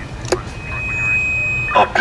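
Low city-street traffic rumble with a single click, then a steady high-pitched tone lasting about a second. A voice starts just before the end.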